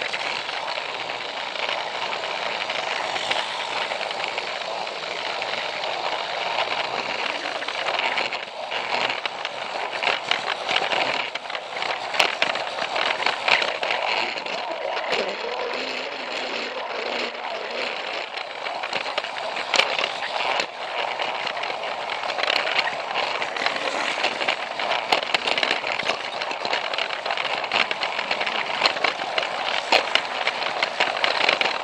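Plarail Thomas toy train running along plastic track: a steady whirr from its small electric motor and gears, with irregular clicks and rattles as the wheels cross the track joints, picked up by a camera riding on the train.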